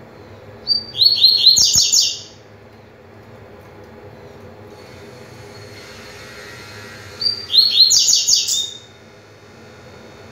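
Caged double-collared seedeater (coleiro) singing its fast tui-tui song in two short phrases, one about a second in and one about seven seconds in. Each phrase is a brief lead note followed by a quick run of repeated high notes.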